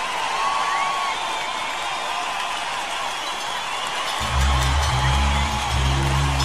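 Concert audience cheering and whistling, then about four seconds in the band's intro comes in with low sustained notes under the crowd noise.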